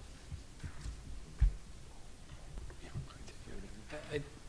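Hushed, murmured voices of people conferring near table microphones, too low to make out words, with a single dull thump against the table or microphone about a second and a half in.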